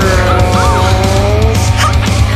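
Sleaze-metal band track in an instrumental passage: a lead electric guitar holds and bends sustained notes over steady bass, drums and cymbals. There is a quick up-and-down bend in the middle.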